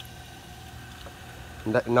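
Steady low hum with a faint wash of water: submersible pond pumps running and a garden hose pouring in while a muddy pond is flushed out, fresh water going in and dirty water being pumped out.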